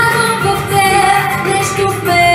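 A young girl singing a pop song into a handheld microphone over a backing track, holding one long note through most of it.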